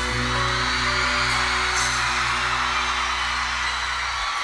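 Live pop-rock band playing an instrumental break with electric guitar and keyboards over steady held bass notes. There is no singing.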